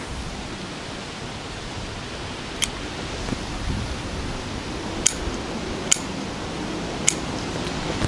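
Pruning scissors snipping small Lonicera nitida branches: four short, sharp snips a second or so apart, over a steady background hiss.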